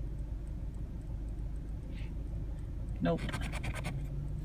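A coin scraping the coating off a scratch-off lottery ticket: a quick run of about ten short scratching strokes in under a second near the end.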